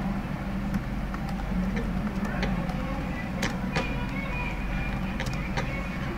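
Scattered keyboard key clicks, a few each second, as text is typed. They sit over a steady low hum and background noise.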